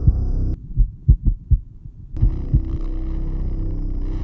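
Heartbeat sound effect in a film soundtrack: a few low, dull thumps, exposed when the droning music cuts out suddenly about half a second in. The drone comes back about two seconds in, with two more thumps under it.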